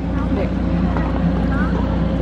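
Steady low engine hum from a parked TV outside-broadcast truck, running without change, with faint crowd voices over it.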